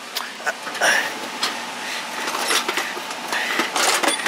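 A workbench drawer being pulled open and its contents handled: scattered clicks, knocks and rattles over scraping and rustling.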